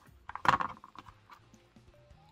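Small hand-handling sounds of resin model parts and tools on a cutting mat: one sharp knock about half a second in, followed by a few faint clicks.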